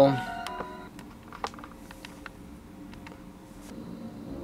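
A few faint light clicks and taps of thin painted wooden slats and a paintbrush being handled on a cardboard-covered table.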